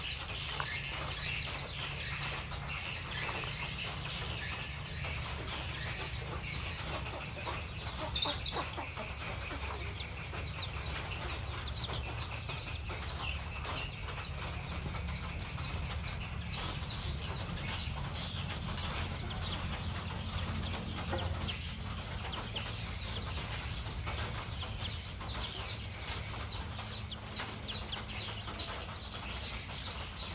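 Many small birds chirping continuously in a dense chorus of short, quick calls, over a steady low hum.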